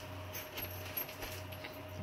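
A dog playing with a toy: faint, scattered jingling and rattling over a low steady hum.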